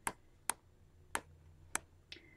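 Sheets of a pad of metallic-foil kraft craft papers being flipped through by hand: four short sharp snaps of paper, roughly one every half second.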